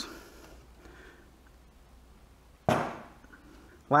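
A single sharp clunk about three seconds in, dying away within about a second, after a stretch of low room noise.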